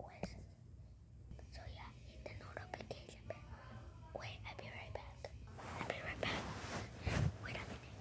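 A boy whispering close to the microphone, with small clicks and rustles from his hand on the phone; the whispering gets louder and hissier near the end.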